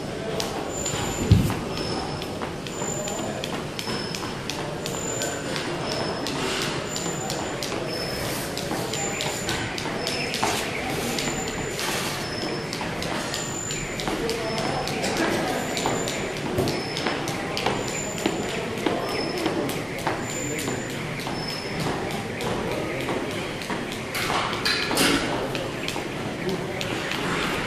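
A jump rope slapping a rubber gym floor with the skipper's feet landing, a run of quick taps that keeps changing pace as he works through footwork tricks, with a single loud thump about a second in.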